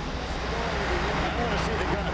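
Steady drone of a cargo ship's engine-room machinery (main engines and generators) running, with faint voices under it.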